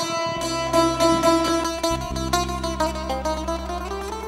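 A Greek folk band playing: a fretted lute plucked with a pick carries the melody over steady bass notes.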